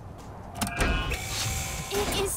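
Cartoon sound effect of an automatic sci-fi door sliding open, a short motorized whir with a hit partway through.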